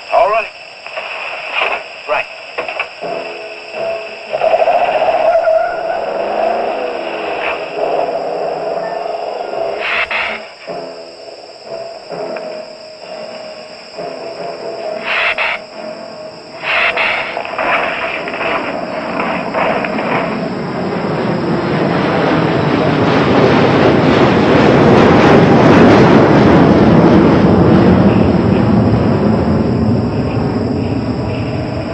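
Old film soundtrack with dramatic score and effects. Short, sharp stings come in the first half, then a long, dense sound swells to its loudest about two-thirds of the way through, as the giant lizard appears on screen.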